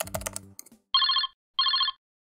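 Telephone ringing twice, two short trilling rings: the sound of a call ringing through at the other end.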